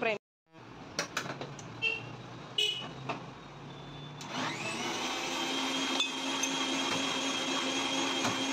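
A few clicks and knocks, then an electric juice blender starts about four seconds in and runs steadily with a hum.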